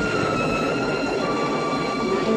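Steady heavy rain with high, held notes from the film score sounding over it, the pitch stepping down about a second in.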